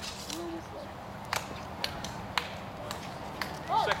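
A handful of sharp, light clicks, spaced about half a second to a second apart, over a steady outdoor hiss, with a faint voice in the background near the start.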